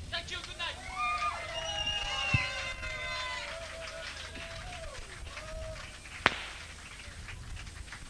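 Audience at a live punk gig shouting and whooping, several voices overlapping. One sharp knock comes about six seconds in.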